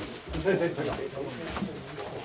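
Low human voices in short broken syllables, with a cooing quality.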